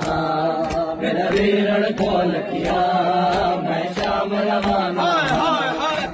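A group of men chanting a noha (Shia mourning lament) in unison, with rhythmic chest-beating (matam) about twice a second.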